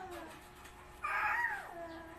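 A toddler's high-pitched wordless vocal call that rises and then falls, about a second in, following the fading end of a similar call.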